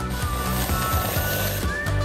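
Aerosol whipped-cream can spraying: a steady hiss that cuts off near the end, with background music under it.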